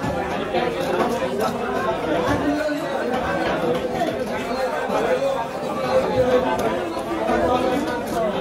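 Steady background chatter of several voices in a busy fish market, with occasional faint clicks and scrapes of a knife working the scales of a large rohu on a wooden block.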